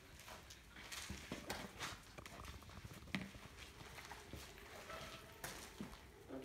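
Faint, irregular clicking of a dog's claws and paws on a concrete floor as it walks about.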